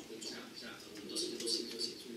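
A man's voice speaking, played back from a recorded video over the room's speakers.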